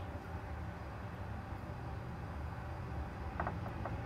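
A steady low hum of room noise, with a few soft clicks near the end as a peeled boiled egg is set into a glass lunch container.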